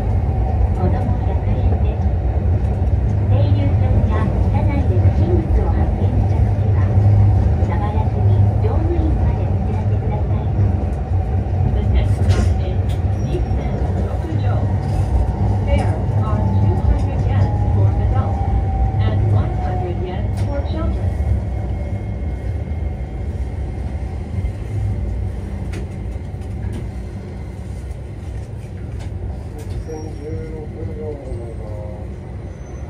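Sapporo streetcar A1100 'Sirius' low-floor tram running, heard from inside the car: a steady low rumble of wheels on rail and running gear, with a falling whine from the drive in the middle. Over the last several seconds the sound fades as the tram slows down.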